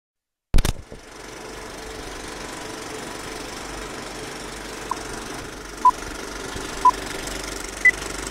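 A sharp click, then the steady clatter and hiss of an old film projector running. About five seconds in come three short beeps, a second apart, and a fourth, higher beep just before the end.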